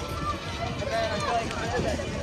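Passers-by talking close by, over the steady murmur of a crowded pedestrian promenade.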